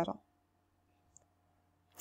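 Near silence, apart from the tail of a spoken word at the start, with one faint, short click about a second in.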